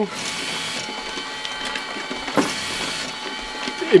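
LAB500 automatic labelling machine with its input feeder and conveyor belt running with a steady whine. Two brief rushing sounds about two seconds apart come as vacuum-sealed coffee bags are fed through and labelled.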